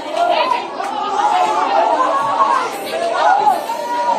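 Many voices at once: a congregation praying aloud together, a steady overlapping din of speech with no single voice standing out.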